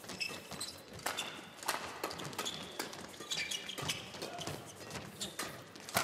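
Badminton rally: sharp racket strikes on the shuttlecock, about one or two a second at irregular intervals, with the players' footwork on the court between them.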